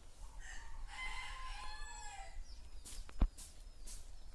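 A rooster crowing once, a call of about two seconds, with small birds chirping around it. A single sharp knock comes about three seconds in.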